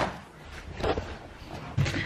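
Faint handling noise: a couple of soft knocks and rustles as things are moved about.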